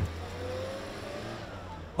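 A car engine in street noise, its pitch rising slowly in the first second as it passes.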